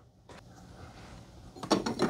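Faint room tone, then a few light clicks and knocks near the end as a double-walled glass espresso cup is handled on the espresso machine's metal drip-tray grate.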